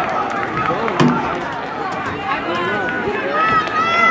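Spectators' voices overlapping in chatter and calls across an outdoor crowd, with one high voice starting a long, drawn-out shout near the end.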